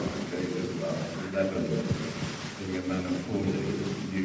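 A man talking from the stage through a hall PA, muffled and hard to make out, over a steady background hiss of an old audience tape.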